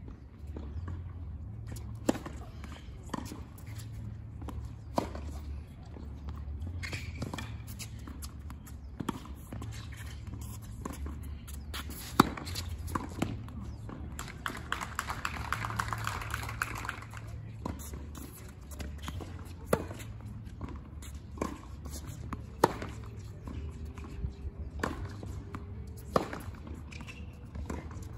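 Tennis balls struck by rackets and bouncing on a hard court: single sharp hits a second or more apart, over a steady low rumble. A short spell of light applause comes about halfway through.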